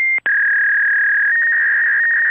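Steady electronic beep tone: a short higher beep stops just after the start, and after a very brief break a slightly lower tone is held steadily.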